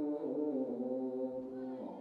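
Male Orthodox Tewahedo clergy chanting a Ge'ez Christmas hymn together in slow, long-held notes. The melody steps downward and moves to a new note near the end.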